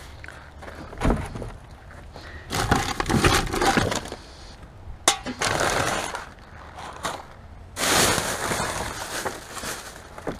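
Rubbish being rummaged through and shifted in a plastic wheelie bin: bin bags rustle and crinkle in several bouts, with a thump about a second in and a sharp knock about five seconds in.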